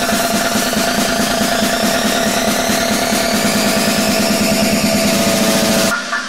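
Hard techno build-up: a loud, steady buzzing synth with a sweep rising slowly in pitch over it, rapid pulsing, and no deep bass kick.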